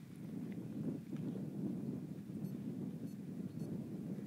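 Wind on the phone's microphone on an open summit: a steady, low rumbling noise.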